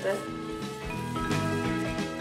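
Background music with soft, sustained held notes.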